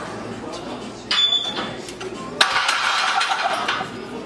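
Iron weight plates on a loaded barbell clinking and rattling during a set of high-bar back squats: a sharp metallic clink with a brief ring about a second in, then a longer clatter from a little past halfway, over a low murmur of background voices.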